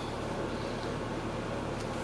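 Steady rush of air from the Mercedes-Benz CL500's climate-control blower, with a low hum underneath, heard inside the car's cabin.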